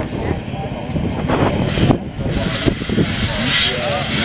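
Many enduro motorcycle engines running together as the riders warm them up on the start line, a steady massed drone.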